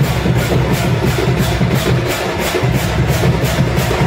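Procession drum band playing a fast, steady beat on racked drums with a cymbal struck about four times a second.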